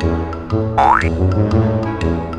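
Upbeat background music with a steady beat of about two pulses a second. A short rising sound effect cuts in a little before the middle.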